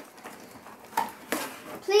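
Toy packaging being handled: quiet rustling, then a short sharp crinkle or clack about one and a half seconds in, followed by a child saying "Please".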